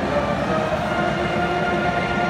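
Marching band brass holding long, steady chords over the murmur of a large stadium crowd.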